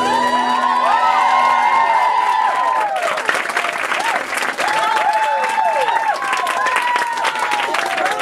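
Audience applauding and cheering, with whoops that rise and fall in pitch; the clapping grows denser about three seconds in.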